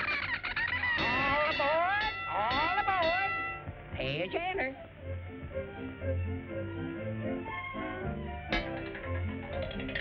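Cartoon orchestral score. Over the first few seconds come quick sliding, squawk-like sound effects and a few held high notes. After that the music carries on with a steady bass line.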